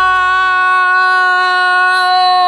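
A woman's voice holding one long, loud, steady sung 'oh' note at a fairly high pitch.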